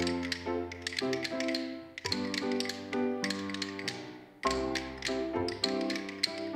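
Wooden rhythm sticks clicked together in rhythm by a group of children, several taps a second, over pitched instrumental music. The sound dips briefly a little after four seconds in, then the tapping and music come back in strongly.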